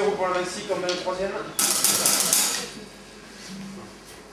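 A voice, then a short hissing burst of noise about a second and a half in, lasting under a second; the sound then drops to a quieter level.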